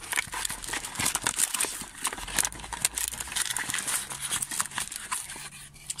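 Cardboard box and plastic packaging being handled and rummaged through, an irregular run of rustles, crinkles and small knocks.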